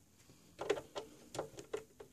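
Screwdriver with a T10 Torx bit turning screws out of an oscilloscope's plastic case. It makes a run of small, sharp clicks, a few a second, starting about half a second in.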